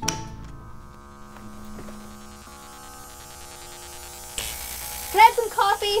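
A wall toggle switch clicks, then a steady electric hum made of several held tones sets in. About four and a half seconds in, a hiss joins the hum.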